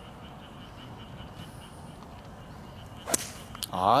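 Golf utility club (hybrid) striking a ball off the fairway turf about three seconds in: one sharp crack, followed by a fainter click and a man's short 'ah' as he watches the shot.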